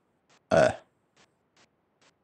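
A single short throaty vocal sound from a man, about half a second in and lasting about a third of a second. Faint ticks follow at regular intervals, a little over two a second.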